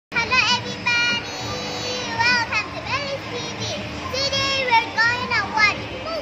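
A young girl's high voice vocalizing without clear words in a sing-song way, with swooping glides and a few briefly held notes, over a faint steady background hum.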